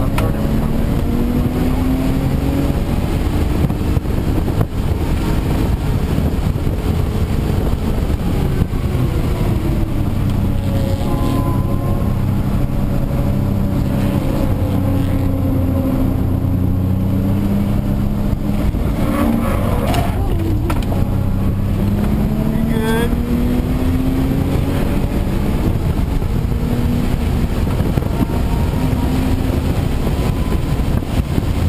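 Audi B5 S4's twin-turbo V6 heard from inside the cabin under hard driving, its pitch climbing again and again as it accelerates and falling away at each lift or gear change.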